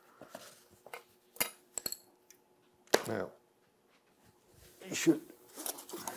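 Metal bookbinding tools, a steel straightedge and knife, clicking and clinking as they are handled and set down on the bench: a few separate sharp clicks, one with a short metallic ring, and a louder knock about three seconds in.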